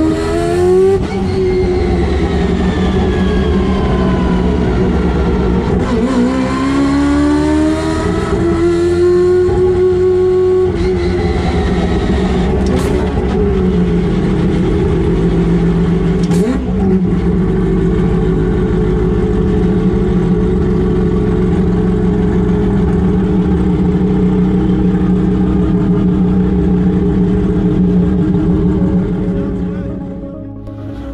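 Turbocharged four-rotor Mazda rotary engine of a race-prepared RX-7 heard from the cockpit at full racing pace, loud. The revs climb, drop, climb again, then hold fairly steady for a long stretch, with two sharp cracks about halfway through.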